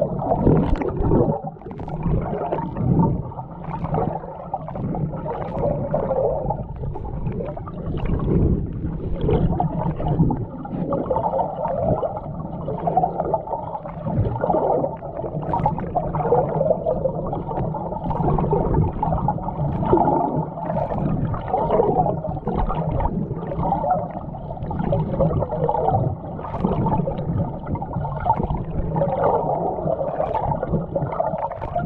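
Muffled underwater sound of moving shallow sea water: a steady low rumble with irregular swishes and gurgles.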